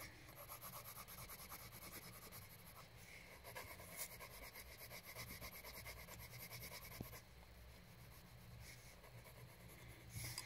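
Faint, rapid scratching strokes of a colouring tool on paper as an area of the drawing is coloured in.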